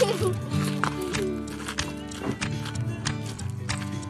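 Background music with a steady beat of clicking percussion over held notes, with a short wavering vocal sound right at the start.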